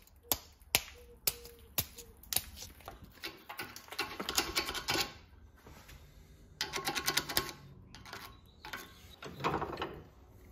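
Steel hammer head being handled at a cast bench vise: single sharp metal knocks in the first couple of seconds, then runs of rapid clicking and rattling as the head is clamped and unclamped.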